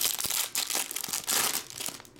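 Clear plastic card sleeve crinkling as a trading card is worked out of it: a dense run of crackles that fades near the end.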